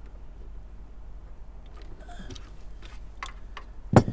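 Faint clicks and handling noise of hands stripping and working thin automotive wires with a small hand tool, ending in one sharp click; a low steady hum underneath.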